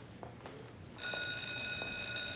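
School bell sounding a steady electronic tone that starts about a second in, signalling the end of class.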